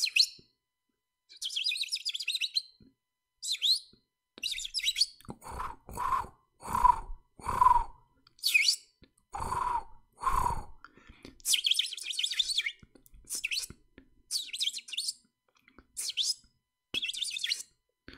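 Birds chirping and calling in short bursts: many quick high chirps, with a run of louder, lower, harsher calls in the middle.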